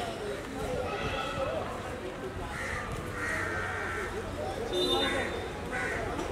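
Indistinct voices of a few people talking in the background, with several short, higher-pitched calls heard over them.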